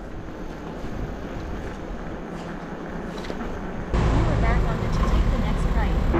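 Steady wind and road noise from riding an electric bike along a wet street. About four seconds in it turns suddenly louder, with low wind buffeting on the microphone.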